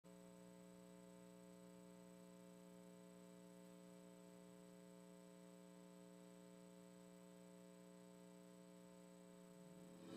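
Near silence with a faint, steady electrical hum with many overtones.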